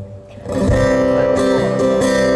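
Live band music starting about half a second in, led by strummed acoustic guitar, with a low beat underneath.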